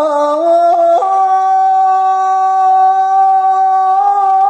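A man's voice singing unaccompanied. It climbs in a few quick steps about a second in, then holds one long, steady high note for about three seconds.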